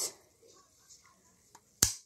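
Faint handling of a 1:24-scale toy garbage truck, then one sharp click near the end as a part of the truck snaps into place.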